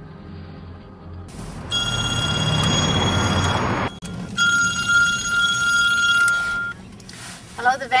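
A telephone ringing twice, each ring about two seconds long with a short gap between them. It is answered near the end.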